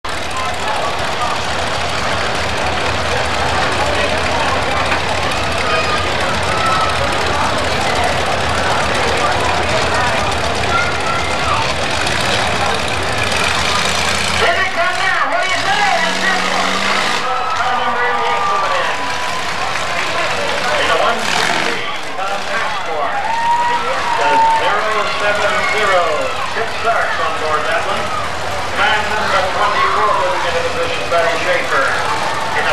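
Demolition derby cars' engines running under the overlapping chatter of a crowd. The engine rumble drops away about halfway, leaving mostly voices.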